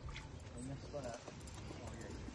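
Faint, indistinct voices over a quiet, steady outdoor background.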